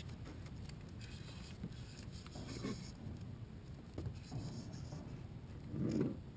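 Levelwind baitcasting reel loaded with braided line being cranked against a hooked fish, a soft scratchy winding with faint ticks, over a steady low rumble.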